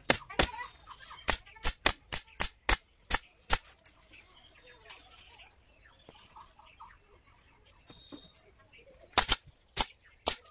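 Pneumatic upholstery staple gun firing staples through leatherette into a wooden sofa frame: a quick series of about ten sharp shots, roughly three a second, then a pause and two or three more shots near the end.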